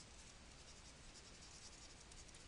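Faint scratching of a stylus writing on a tablet surface, in short irregular strokes.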